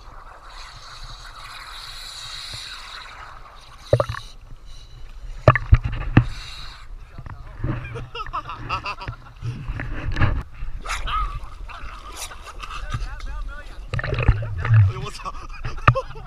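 Seawater sloshing and splashing around a camera held at the water's surface, with many sharp splashes from about four seconds in over a steady low rumble of water and wind on the microphone. Voices can be heard at times.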